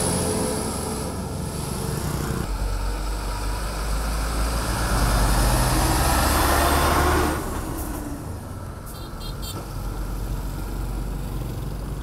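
Heavy Sinotruk dump trucks laden with sand passing close by: a low diesel engine rumble with tyre and road noise that grows louder as a truck goes past, then drops off abruptly about seven seconds in to quieter traffic.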